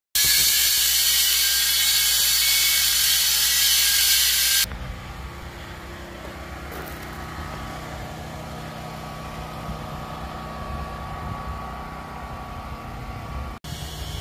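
A loud steady hiss that cuts off abruptly about four and a half seconds in, followed by a quieter, steady low engine rumble of a vehicle idling.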